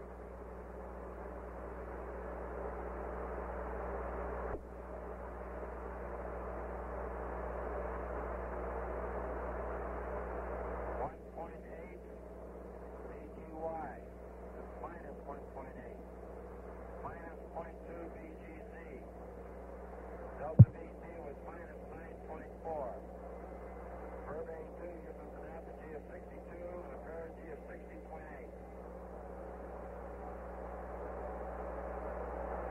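Apollo 8 space-to-ground radio circuit, noisy and narrow-band: a steady hiss over a low hum that drops a step about eleven seconds in, followed by faint, broken crew voice buried in the noise as the burn status report goes on. A single sharp click comes about two-thirds of the way through.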